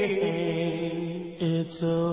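Male vocal group singing a cappella in close harmony, holding long chords without lyrics being picked out, with a brief break and re-entry about a second and a half in.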